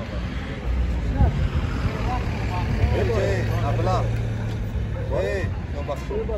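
Men talking in conversation, their voices coming and going, over a low rumble with a steady low hum in the middle of the stretch.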